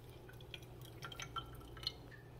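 Faint, scattered drops of water dripping in a stainless steel kitchen sink, over a low steady hum.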